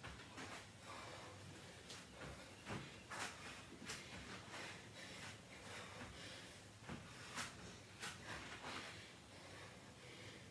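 Faint, irregular thumps and breaths of a person doing burpees on an exercise mat, roughly one every second.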